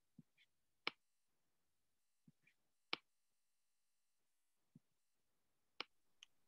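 Near silence broken by three sharp, short clicks about two seconds apart, with a few fainter taps between them: computer mouse clicks while working a charting screen.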